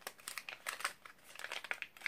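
Packaging crinkling and crackling as a small wax melt is unwrapped by hand, in a quick irregular run of crackles.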